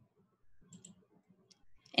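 Faint computer mouse clicks: two quick clicks a little under a second in and another about a second and a half in, over a faint low background murmur.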